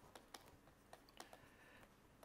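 Near silence with faint, irregular clicks and taps of a stylus writing on a digital tablet, and a brief light scratch in the second half.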